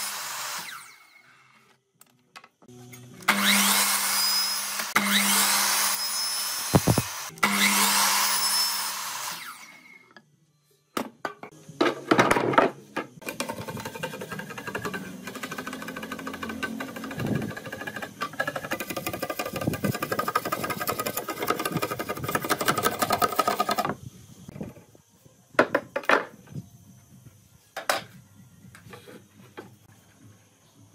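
Sliding compound miter saw cutting through green bamboo pole: three cuts of about two seconds each, with the motor's steady hum under the blade noise. After that comes about ten seconds of quick repeated strokes of a long knife scraping along bamboo, then a few scattered knocks of bamboo being handled.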